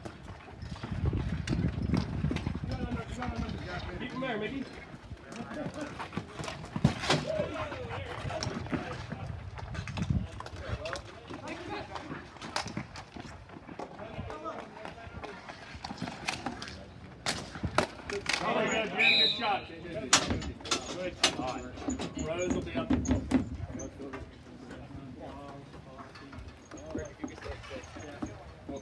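Ball hockey play: sharp, irregular clacks of sticks hitting the ball and knocking against each other, mixed with the voices of players and the bench, and a burst of shouting about two-thirds of the way through.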